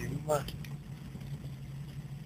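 Alfa Romeo Giulia Super's freshly rebuilt twin-cam four-cylinder racing engine running steadily at low revs, a low drone heard from inside the cabin with no revving.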